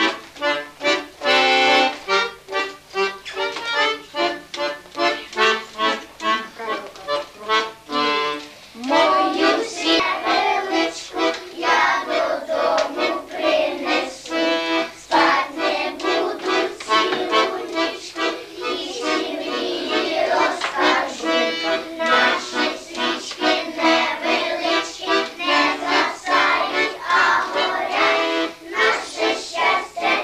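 Accordion playing a bouncy accompaniment of short, evenly spaced chords. About nine seconds in, a group of young children start singing along with it.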